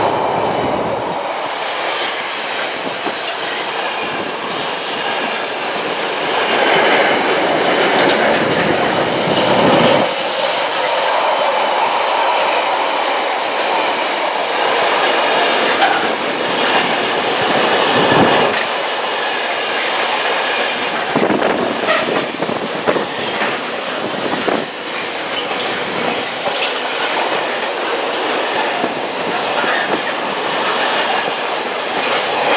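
Intermodal container flat wagons of a freight train rolling past at speed. The steady rush of wheels on rail is broken by repeated clicks and clacks as the wheels pass over the track.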